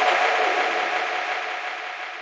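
Techno DJ mix in a breakdown: the kick drum and bass have dropped out, leaving a sustained synth wash with a couple of held tones that fades away steadily.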